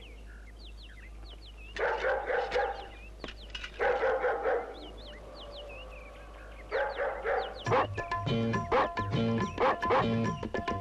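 A dog barking in three bursts of several barks each, over birds chirping. Music with a steady beat comes in near the end.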